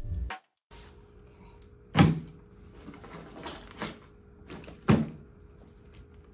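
Handling things at a bag: two sharp knocks about three seconds apart, with a few lighter clicks and rustles between them, over a steady low hum of room tone.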